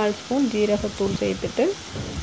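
Onion-tomato masala sizzling in a kadai over the gas flame, with coriander powder just added to fry in the oil.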